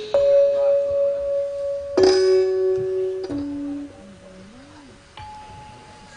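Sparse gamelan accompaniment: ringing struck-metal notes sounding one at a time and stepping down in pitch through the first four seconds, with a single higher note near the end.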